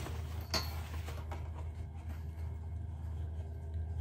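A few light clicks and taps of a steel ruler and pen being handled on cardboard, over a steady low hum.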